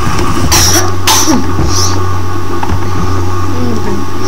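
A loud, steady low hum from the webcam's microphone, with a few short breathy, hissing noises and faint scraps of voice as the camera is moved.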